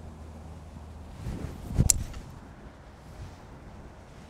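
A three-wood striking a golf ball off the tee: a brief swish of the downswing, then one sharp crack about two seconds in.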